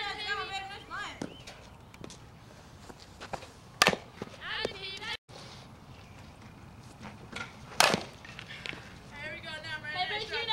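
Softball bat striking pitched balls: two sharp cracks about four seconds apart, with voices faintly in the background.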